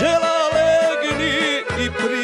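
A man singing a sevdah song over a folk band with accordion. He holds a long note for most of the first second, then sings an ornamented, wavering phrase, over a steady pulsing bass beat.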